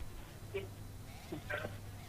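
An open telephone line with no one answering: a low steady hum, with two brief faint voice-like sounds about half a second and a second and a half in.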